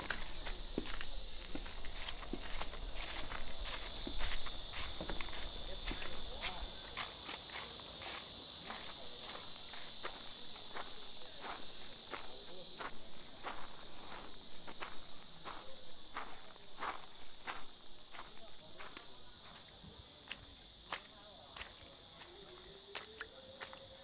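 Irregular footsteps over a steady, high-pitched insect hum; the hum is louder for roughly the first dozen seconds.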